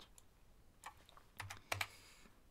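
A few separate computer-keyboard keystrokes, quiet and mostly in the second half, while text is deleted from a query.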